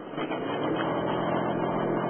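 Car engine running steadily with road noise as the car drives slowly, heard from inside the cabin.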